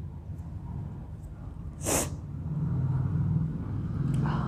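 A woman sneezing once, sharply, about two seconds in, a sneeze provoked by sniffing black pepper.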